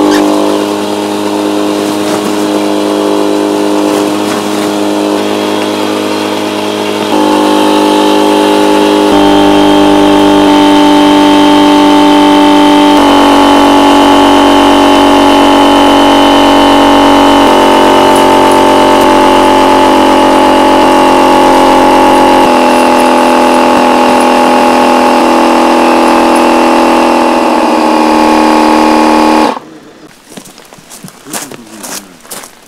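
Dometic electric air pump running as it inflates an air tent's beams: a loud, steady motor hum whose pitch shifts in steps several times. It cuts off near the end.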